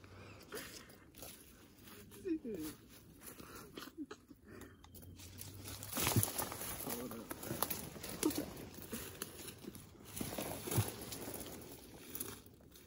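Quiet rustling of dry leaf litter and brush as a hunter steps around and handles a downed deer, with a few soft knocks.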